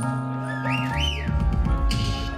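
Live band music with held bass and keyboard chords, and two quick up-and-down whistles about half a second in. A drum beat comes back in a little past the middle.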